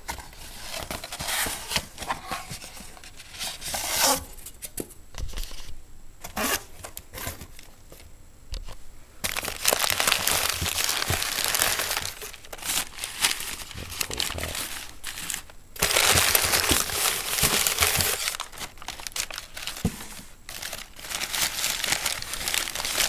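Crumpled newspaper packing being handled and pulled out of a shipping box by hand, crinkling with some tearing in irregular bursts. The sound is loudest in two stretches, about nine and sixteen seconds in.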